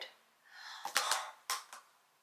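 A few sharp clicks with light rustling from a small portable speaker being handled and its buttons pressed; it stays silent because its battery has run flat.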